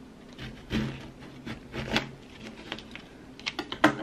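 Light clicks and knocks of a plate and kitchen utensils being handled on a counter, with a sharper knock near the end.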